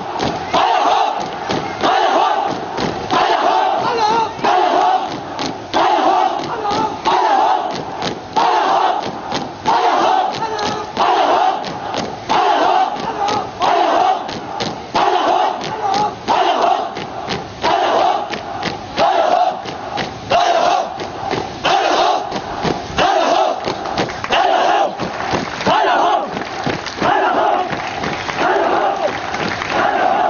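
A large group of voices shouting in unison, a chant-like shout repeated about once a second, with sharp knocks or claps among the shouts.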